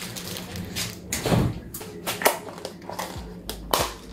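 Plastic food containers and lids being handled on a kitchen counter: several sharp clicks and knocks, roughly one a second.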